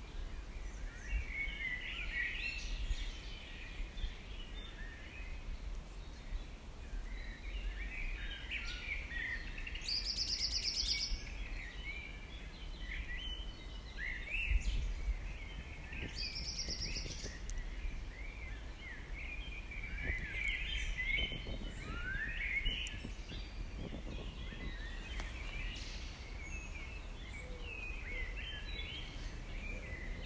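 Many wild birds singing and calling, short chirps overlapping throughout, with two brief very high trills about a third and halfway through. A low rumble of wind on the microphone runs underneath.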